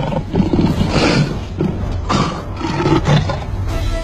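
Two male lions fighting, roaring in repeated harsh bursts about a second apart.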